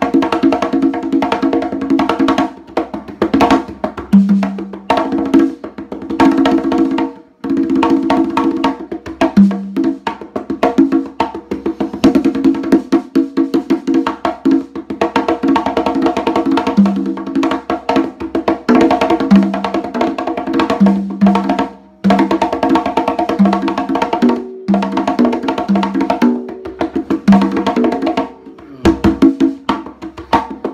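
LP Galaxy conga drums (fiberglass and ash-wood tumbadoras) played by hand in a fast, dense solo, with rapid strokes over ringing drum tones. The playing breaks off briefly about seven seconds in, and twice more after twenty seconds.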